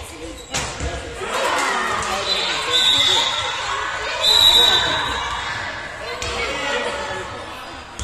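A handball striking the sports-hall floor, with a sharp impact about half a second in and another just after six seconds. Children's voices call out, echoing in the large hall.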